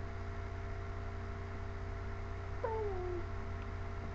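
Domestic tabby cat giving one short meow that falls in pitch, about two-thirds of the way in, over a steady low hum.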